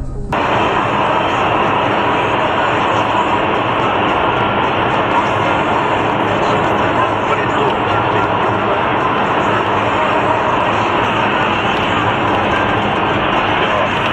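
Steady, loud rushing road and engine noise of a car driving on a highway, picked up by a dashcam microphone inside the cabin.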